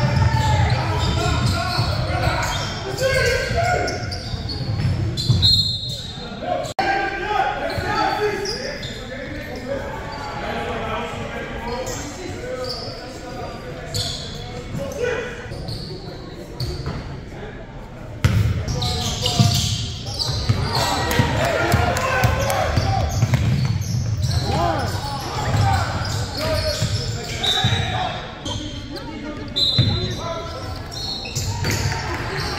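Basketball being dribbled on a hardwood gym floor, with players' and spectators' voices echoing in the large gym. Short referee whistle blasts sound about five seconds in and just before the end.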